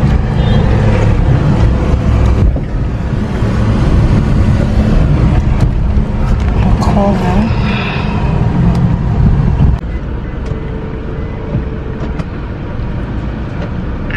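Car engine and road rumble heard from inside the cabin as the car drives slowly; the rumble drops off suddenly about ten seconds in, leaving a quieter steady hum.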